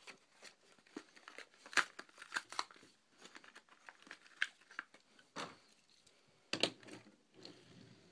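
Hot Wheels blister pack being torn open by hand: the clear plastic bubble crinkles and crackles and the card tears, in irregular short sounds with a few louder snaps.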